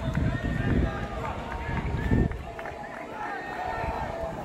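Distant shouts and calls from players and coaches on the field, with low rumbling thuds through the first two seconds or so.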